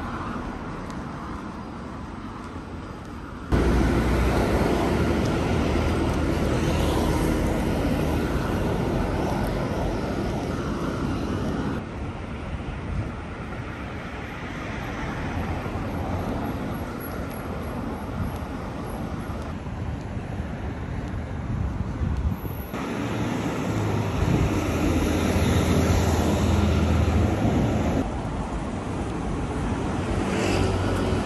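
City street traffic: vehicle engines running and passing, with a low engine hum under a general road noise. The sound changes suddenly several times, louder from about three seconds in and again near the end.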